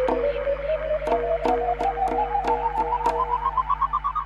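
Closing bars of a dub reggae track: the bass and drums have dropped out, leaving a single electronic tone gliding slowly upward over a held chord, with sharp percussive ticks about three times a second.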